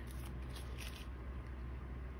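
Faint crinkling and rustling of clear plastic stickers and their cellophane bag being handled between the fingers, a few soft scattered rustles.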